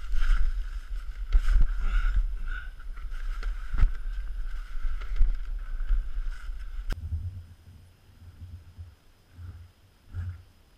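Snow being scooped and flung off roof framing with a snowshoe used as a shovel: repeated scrapes and knocks under heavy wind rumble on a head-mounted camera mic. About seven seconds in, the sound cuts to quieter, soft thuds of snow being dug and thrown.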